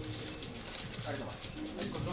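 Many press cameras' shutters clicking rapidly and overlapping in a dense stream, over background music, with a brief voice about a second in and near the end.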